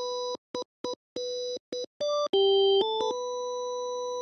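Hammond-style tonewheel organ plug-in playing a series of short staccato notes on one pitch, each a pure tone with a few clear overtones. About two seconds in, a few notes of different pitch follow, the loudest a lower one, and it ends on a held note.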